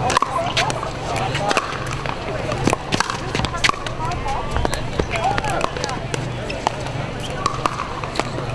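Sharp, irregularly spaced pops of pickleball paddles hitting a hard plastic ball, during a singles rally, with more hits from neighbouring courts, over background chatter.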